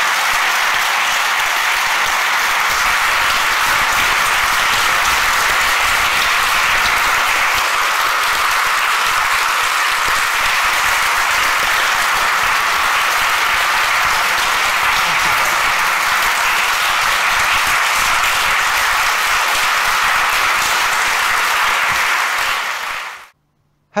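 An audience applauding steadily, fading out about a second before the end.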